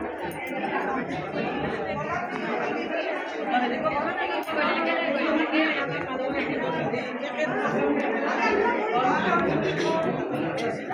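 A group of people chattering over one another, with a laugh about six seconds in.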